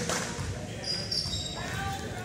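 Basketball game sounds in a school gymnasium: a ball bouncing on the hardwood court and short high sneaker squeaks about a second in, under voices of players and spectators.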